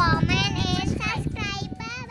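A young girl and a woman calling out together in high, drawn-out, sing-song voices, growing quieter toward the end.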